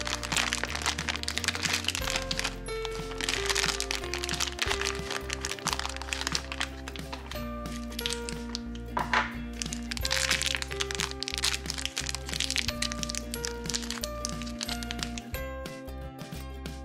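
Light background music, over which a foil blind-bag packet crinkles and crackles as it is torn open by hand, followed by small clicks and crackles of a plastic toy case being opened.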